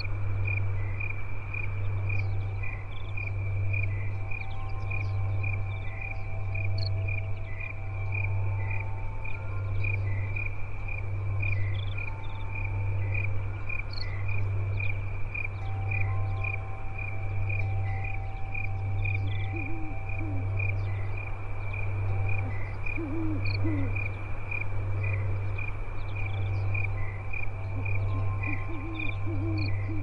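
Crickets chirping steadily in an even rhythm over a deep hum that swells and fades about every second and a half, with soft held tones coming and going. A few brief low wavering calls come in past the middle and near the end.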